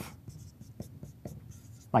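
Dry-erase marker writing on a whiteboard: a series of short, faint scratchy strokes.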